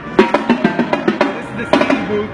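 Drum kit being played: a quick, irregular run of snare and drum hits, with other music underneath.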